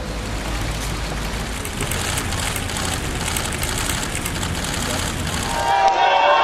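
Steady outdoor ambience: a low rumble of wind on the microphone under indistinct crowd voices.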